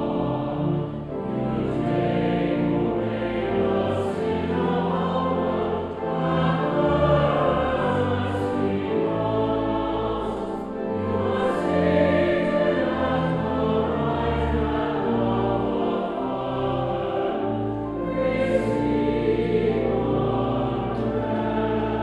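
Mixed choir of men's and women's voices singing a sung Mass setting in long sustained phrases, accompanied by pipe organ.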